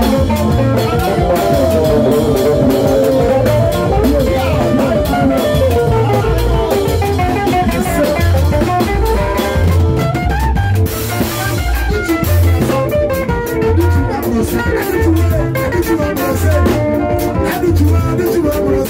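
Live band music: a drum kit keeping a steady beat under bass and a Stratocaster-style electric guitar playing melodic lines.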